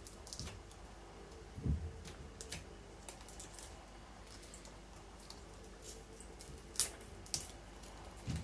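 Faint, scattered clicks and crackles of hands handling the dry old leaves of a potted pineapple crown, with the sharpest crack about seven seconds in.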